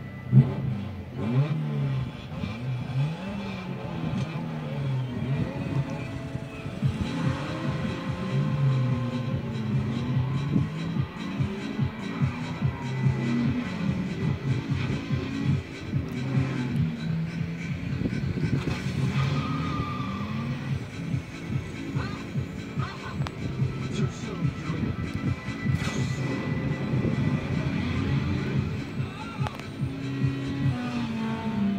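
Movie soundtrack of a street drag race played through a TV speaker: car engines revving up in repeated rising sweeps as they accelerate through the gears, with some tyre squeal, over a music score. A sharp loud hit comes about half a second in.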